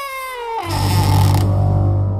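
Horror trailer sound design: a pitched wail slides downward. About half a second in, a deep bass hit lands with a brief rushing swell, then settles into a low sustained drone.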